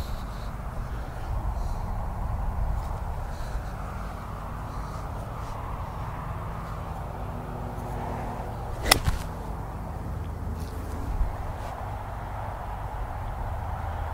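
A golf club striking a ball off the turf: one sharp crack about nine seconds in, over a steady low rumble.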